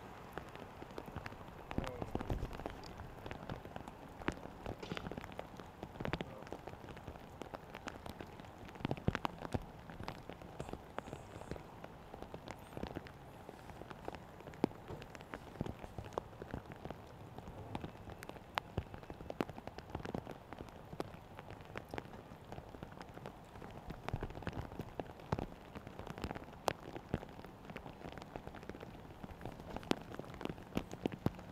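Burning pile of paper ballots crackling, with irregular sharp pops over a steady low hiss.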